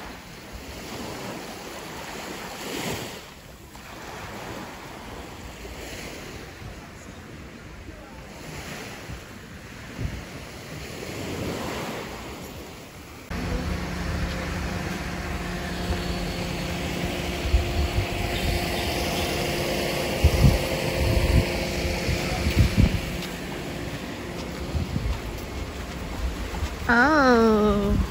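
Small waves breaking and washing up a sandy beach, swelling and fading. About halfway through there is a sudden cut to a louder scene: wind buffets the microphone with low thumps, over a steady hum of several tones.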